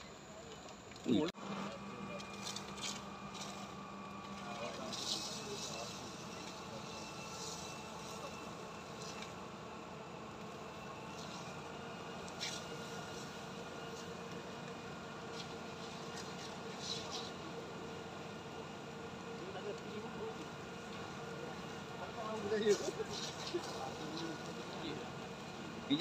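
Steady engine hum of a fire engine running its pump while hoses are in use, under distant voices. A sharp click comes about a second in, and the voices grow louder near the end.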